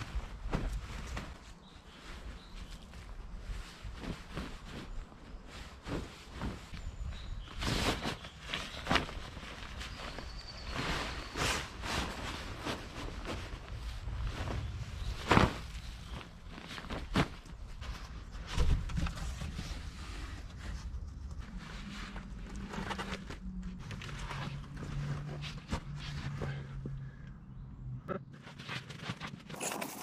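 Rustling and crinkling of a waterproof camouflage bivvy bag and a bulky Arctic sleeping bag being handled and stuffed together, with footsteps crunching on dry leaf litter, in irregular bursts throughout.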